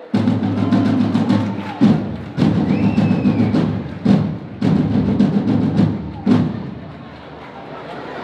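Tabals, the big festival drums of a Catalan ball de diables, played between verses: three loud rolling passages of about a second and a half each, broken by sharp strikes, then fading away over the last two seconds.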